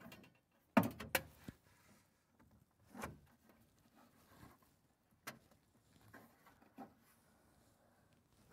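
A few sharp clicks and knocks, spread out and irregular, from parts being handled and fitted inside a 3D printer's enclosure.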